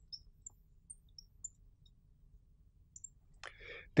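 Marker tip writing on a glass lightboard: a scatter of short, faint, high squeaks and ticks as the letters are drawn.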